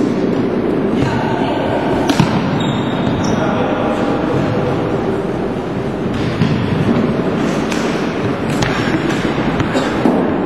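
Floorball game in a sports hall: a few sharp knocks of sticks and the plastic ball over a steady din of players' and spectators' voices.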